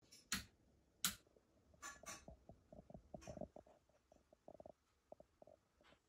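Near silence: room tone with a few faint clicks and taps in the first half.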